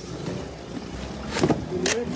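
Lawnmower engine running steadily in the background, with faint voices about a second and a half in.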